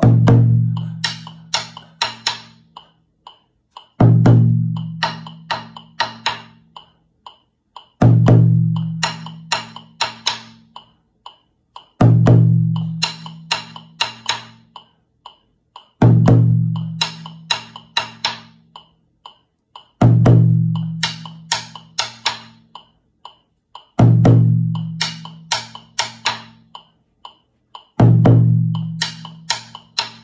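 Djun djun (dunun) drums played with sticks against a metronome ticking at 120 beats a minute: a deep booming stroke every four seconds, followed by a run of sharp stick strokes, the same pattern repeating throughout.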